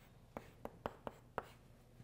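Chalk writing on a blackboard: about five short, sharp taps of the chalk against the board, faint, over the first second and a half.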